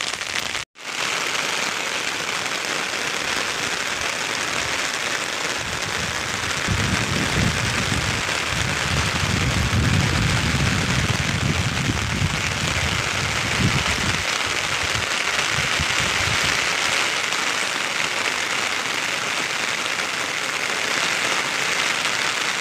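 Heavy rain drumming steadily on an umbrella canopy and the wet ground, an even hiss. A low rumble joins in for several seconds in the middle.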